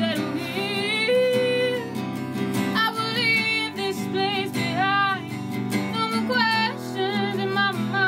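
A singer's voice with vibrato on held notes, over a strummed Dean steel-string acoustic guitar.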